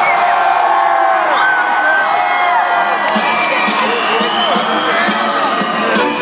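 Large concert crowd cheering, whooping and shouting, many voices over one another, loud throughout.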